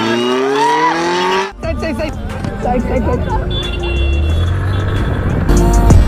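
Kawasaki ZX-10R inline-four sportbike engine accelerating hard, its note rising steadily in pitch, cut off abruptly about a second and a half in. Mixed crowd and road noise follows, with music coming in near the end.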